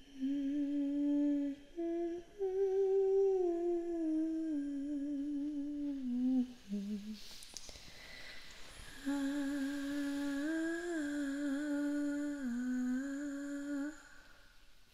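A woman humming a slow, wordless melody in long held notes, in two phrases with a breath between them about halfway through.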